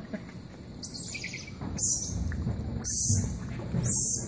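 Squirrel monkeys giving short, very high-pitched chirps, four calls about a second apart, the first falling in pitch.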